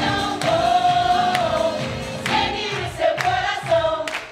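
A song with a choir of voices singing in chorus over instrumental backing, some notes held for about a second.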